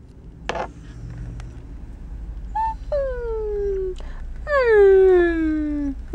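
Small dog crying: two long whining calls that slide down in pitch, about three seconds in and again, louder and longer, about four and a half seconds in.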